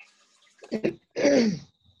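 A person coughing to clear the throat: two short catches, then a longer one that falls in pitch, about a second in.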